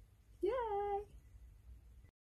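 A single short call of about half a second: it rises, dips, then holds a steady pitch before stopping.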